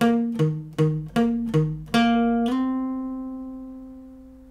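Steel-string acoustic guitar: six single picked notes in a steady rhythm, then a final note on the D string slid up from the eighth to the tenth fret and left ringing, fading slowly.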